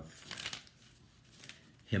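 A book page being turned: a brief papery rustle near the start.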